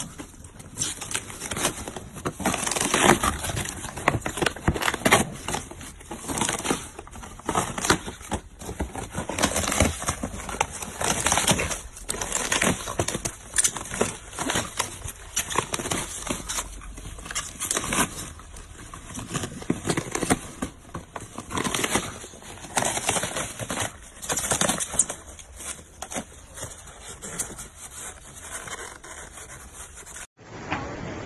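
Dogs tearing and chewing a cardboard box and the white foam packing inside it: a continuous, uneven run of crunching, ripping and crackling.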